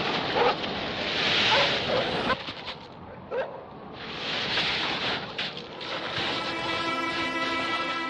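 Two surges of rushing, wind-like noise, with short whining glides in among them, laid under the documentary as sound effects. Background music with a held chord comes in over the last second or two.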